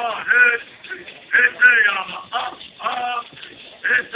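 A group of men singing a Cupeño clan song about the wildcat and coyote clans, in short vocal phrases with brief breaks between them.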